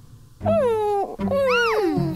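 Two wordless exclamations from a cartoon character's voice. The first starts about half a second in and slides down in pitch. The second, near the end, rises and then falls.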